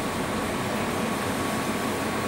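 Steady background machine noise: a constant hiss and hum with a faint steady high tone through it.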